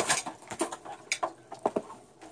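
A few light, irregular clicks and taps from a white wire rat cage, wire and fittings knocking as the loose cage top is handled and the rats move about inside.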